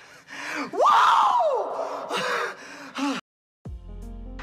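Excited wordless vocal exclamations, a few whoops whose pitch sweeps up and falls away, the longest and loudest about a second in; they stop abruptly a little past three seconds, and steady music comes in just before the end.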